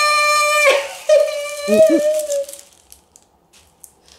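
Excited voices: a high, shrill note held for under a second, then a second drawn-out call of "せー" mixed with laughter. After that only a few faint clicks are heard.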